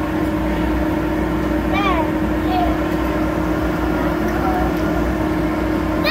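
Steady drone of an air-jet exhibit's blower with a constant hum, blowing plastic balls up into the air. A child's short high-pitched voice cries out about two seconds in, with fainter ones later.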